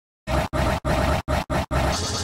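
Heavily distorted, effects-processed logo audio, harsh and noisy, chopped into stuttering blocks about three times a second with short cut-outs between them, starting a quarter second in.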